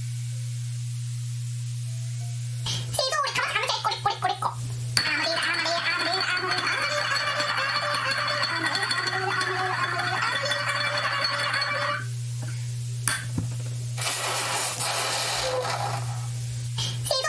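Short-video clips playing back through a computer: voices and music, over a steady low hum. The first few seconds hold only the hum, and the playback comes in at about three seconds.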